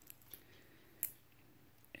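A few faint clicks from a stainless steel watch and bracelet being handled and turned in the hands, the sharpest about a second in, over quiet room tone.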